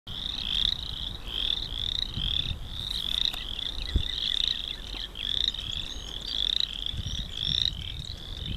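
A chorus of small frogs: many short, high calls overlapping and repeating several times a second, with no break.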